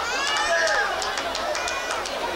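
Electric guitar lead with string bends that slide the pitch up and down, over drum and cymbal hits.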